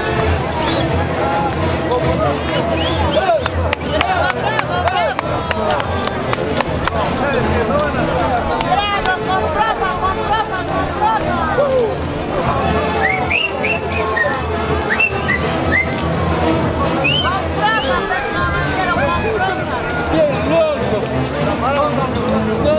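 A live band playing tunantada dance music, with voices from the crowd mixed in.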